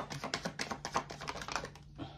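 Rapid, irregular clicking of a deck of oracle cards being shuffled by hand, dying away near the end.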